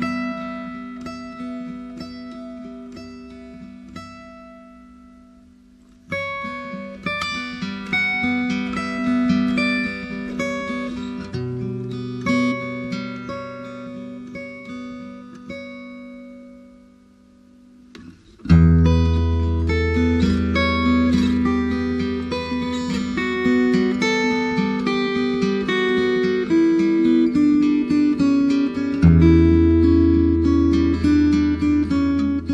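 Instrumental music on acoustic guitar: picked notes ringing and decaying in a quiet passage that fades low twice. About two-thirds of the way in, a louder, fuller section begins with deep bass notes underneath.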